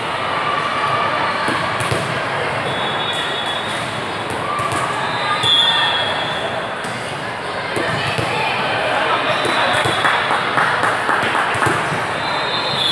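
Volleyballs being served and hit in a large indoor sports hall, repeated thuds over a steady hubbub of player and spectator voices, with a few brief high squeaks.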